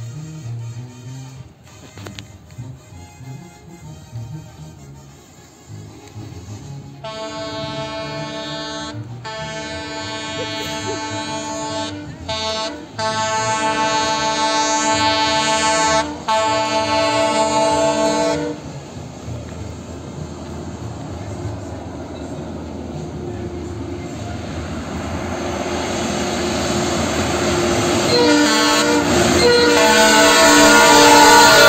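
Multi-tone air horn of the Brandt hi-rail truck KCSM-1 sounding a run of long blasts with short breaks for about eleven seconds. Then the truck and its train of ballast hopper cars rolling on the rails, growing steadily louder, with the horn sounding again near the end.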